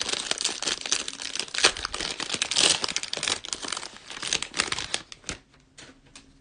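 Cellophane wrapper of a Panini NBA Hoops trading card value pack being torn open and crinkled by hand, a dense run of crackling for about five seconds that stops near the end.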